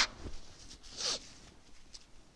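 A man blowing his nose into a tissue: a short hiss of air about a second in, after a louder burst right at the start.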